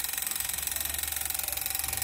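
Small engine of a radio-controlled model kratae farm cart running steadily, driving its long-tail water pump.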